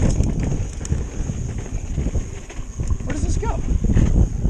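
Wind rumbling on the camera microphone over a mountain bike rolling across sandstone slickrock, with scattered clicks and knocks from the bike and tyres over the rock.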